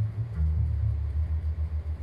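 Double bass playing a line of low notes in a jazz recording played back over a hi-fi, with a quick run of short notes in the second half.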